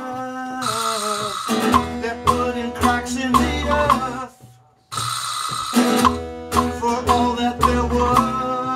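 Live band music from archtop acoustic guitar, upright double bass and drums. The music stops dead for about half a second a little past the middle, then comes straight back in.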